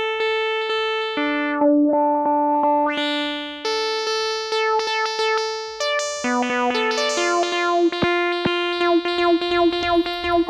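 Novation Peak analogue synthesizer playing a run of bright, buzzy notes, each key strike retriggering the filter envelope with a short springy bump. The filter is under a negative envelope depth. The notes step between pitches and are struck faster near the end. Early on the tone dulls and then brightens again as the filter is swept.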